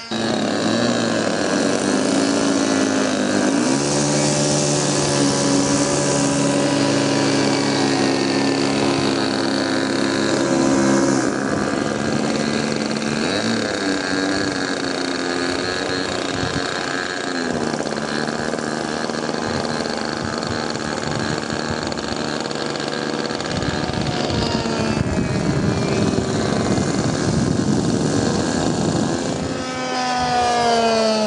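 A 70 mm, 10-blade electric ducted fan on a radio-controlled delta-wing jet model runs continuously in flight with a steady whine. Its pitch bends up and down a few times as the model passes and the throttle changes.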